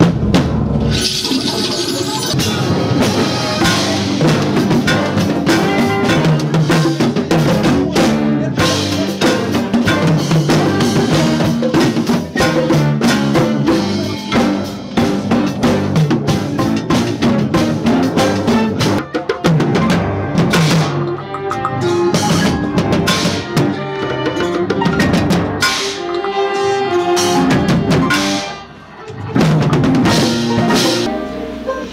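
Small live band playing a busy instrumental passage led by electric bass and drum kit, with quick drum strikes throughout. The music drops away briefly near the end and then comes back in.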